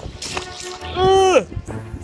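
Shallow seawater splashing as a plush toy is pushed through it, under background music, with one short excited 'woo' shout about a second in.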